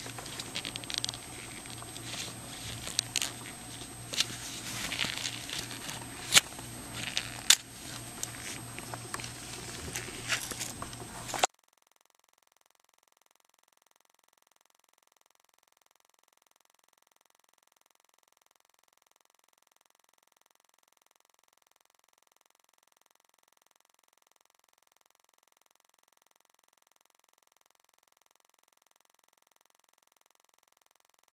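Small clicks, taps and rustles from latex-gloved hands handling a netbook's keyboard, plastic casing and metal keyboard tray, over a steady low hum. About eleven seconds in, the sound cuts off suddenly to silence.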